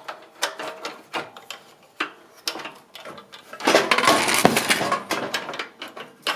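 Metal clicks and knocks from an aluminium tailpipe section and its seat-post clamp being handled and fitted onto a steel exhaust pipe, with a longer scraping stretch a little past the middle.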